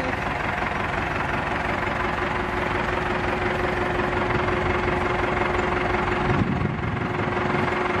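A diesel truck engine, the motorhome's Ford F-4000, idling steadily with a low clattering rumble and a constant hum.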